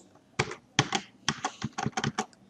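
Keystrokes on a computer keyboard: a run of separate key clicks starting about half a second in and coming faster near the end.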